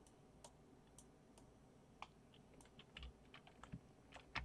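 Faint, irregular clicks of computer keyboard keys, a few a second, coming more often near the end.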